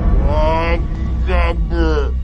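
A person's voice making three drawn-out, wordless vocal sounds with gliding pitch, over a steady low rumble.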